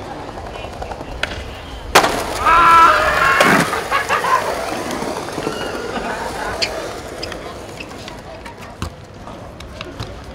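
A skateboard landing a drop with one sharp smack about two seconds in, followed at once by friends shouting and cheering; the wheels then roll on smooth paving, with a few light clicks later on.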